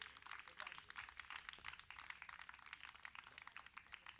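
Faint scattered clapping from a small audience after a song ends, many irregular claps.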